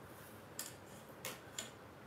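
Three faint, light clicks, about half a second apart, as a pencil and a clear plastic ruler are handled and set down on a craft cutting mat.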